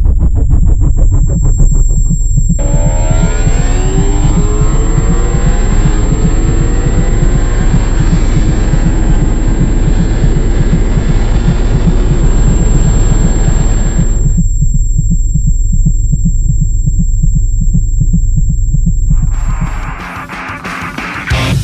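Ducati Panigale V4 Speciale's V4 engine pulling hard at high speed, its pitch rising through the gears, from about two and a half seconds in until about 14 s, when it turns suddenly muffled. A deep, regular throbbing pulse like a heartbeat runs underneath throughout.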